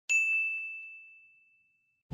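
A single bright bell-like ding, struck once and ringing away over about a second and a half.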